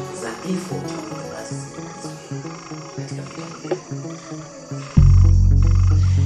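Film soundtrack: a pulsing, croak-like pitched pattern with a steady high trill above it. About five seconds in, a sudden loud, deep low tone cuts in and holds.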